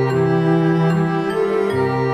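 Soft, slow instrumental lullaby music with sustained notes over a held bass line.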